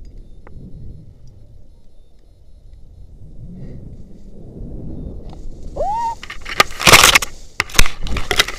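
Rope-jump swing: low wind rumble on the body-worn camera's microphone, a short high squeal about six seconds in, then loud rustling and crackling as leafy branches brush and snap against the camera near the end.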